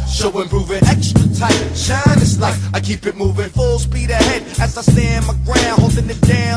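Late-1990s hip-hop track: a rapper's voice over a deep bassline and a drum beat.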